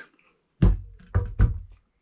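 Four dull thunks as two Roughneck micro shovels with fibreglass handles are laid down on a workbench. The loudest comes about half a second in, then three more close together just after a second.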